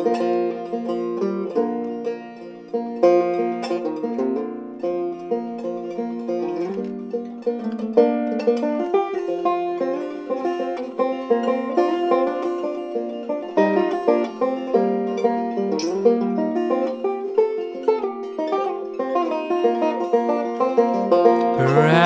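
Banjo played solo in an instrumental break, a quick, steady stream of picked notes.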